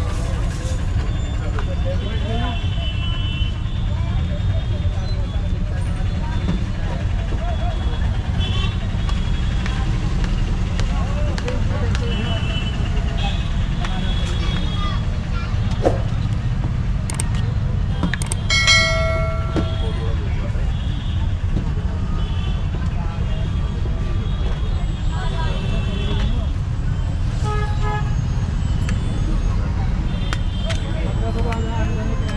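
Busy street ambience: a steady low traffic rumble with faint voices, and a vehicle horn honking for about a second a little past the middle.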